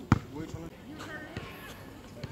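A basketball bouncing once on asphalt, a single sharp thud just after the start, followed by indistinct voices.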